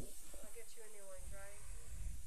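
A steady hiss, with a faint, distant voice murmuring for about a second and a half in the middle.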